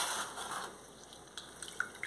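Half a lime squeezed by hand over a glass of water, its juice squirting and dripping into the water: a short wet burst at the start, then a few small drips.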